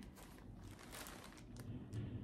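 Faint crinkling and rustling of a quilt kit's packaging being handled, with a few soft scattered crackles.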